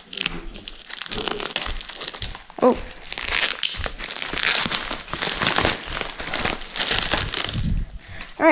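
Plastic wrap and bubble wrap crinkling and rustling as hands pull it off a newly delivered electric dirt bike. The rustling is sparse at first, then denser and louder from about three seconds in.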